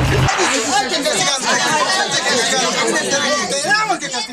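Several voices talking and calling out over one another in excited chatter, with no words clear. A short noisy burst sits at the very start, before the voices come in.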